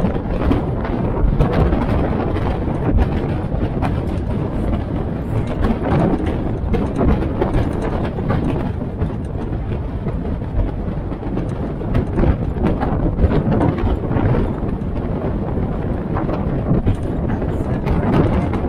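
A military-style Jeep driving along a forest road: the engine running steadily under way, with constant irregular rattling and knocking from the open body over the rough surface.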